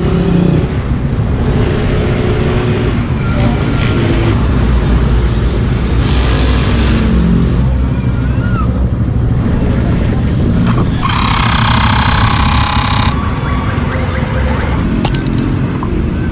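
Steady roadside traffic rumble. About eleven seconds in, a louder, higher-pitched passing vehicle sound lasts about two seconds.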